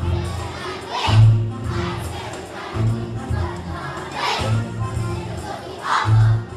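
A large group of young children singing and shouting a song together over music with a low bass pulse about every one and a half seconds, the voices loudest about a second in, around four seconds, and near the end.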